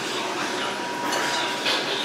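Steady rushing background noise of a stir-fry restaurant's kitchen, with a thin high tone held for about a second and a half and a couple of faint clinks near the end.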